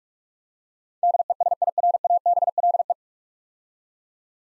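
Morse code sent as a single steady pitched tone at 45 words per minute, a rapid string of short and long beeps lasting about two seconds and starting about a second in. It spells out the whole nine-letter word DESIRABLE.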